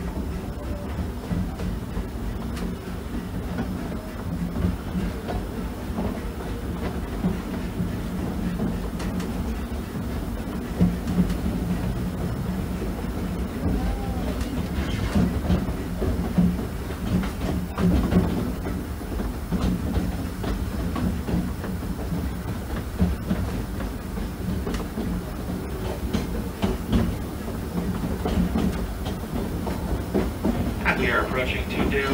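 Disneyland Railroad passenger car rolling along the track: a steady low rumble of the running train, with scattered short knocks and clacks from the wheels and cars.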